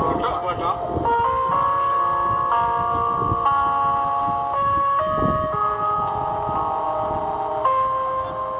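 A simple jingle-like melody of clear held notes, stepping from one pitch to the next every half second or so, with faint voices underneath.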